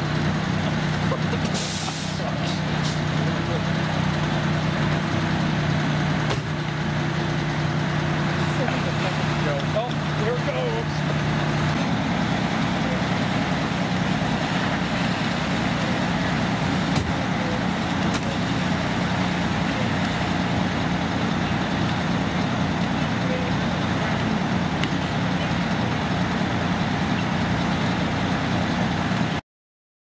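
Fire apparatus diesel engines running steadily under load to drive the aerial ladder and the pumps feeding the water streams. The result is a continuous drone whose pitch shifts down-to-up about twelve seconds in, with a few short hisses about two seconds in. The sound cuts off suddenly near the end.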